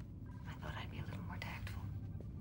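Faint, soft voice sounds close to a whisper over a low steady background hum.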